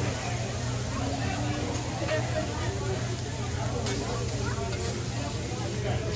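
Background chatter of people at a restaurant table over a steady low hum, with food sizzling on a teppanyaki griddle and a couple of light clicks about four seconds in.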